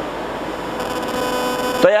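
Steady electrical hum with thin constant tones, typical of a public-address microphone system in a pause in speech. A man's voice comes in near the end.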